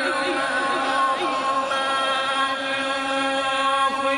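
A man reciting the Quran in the melodic tilawat style, holding one long note with quick warbling ornaments in the first second, and gliding down near the end.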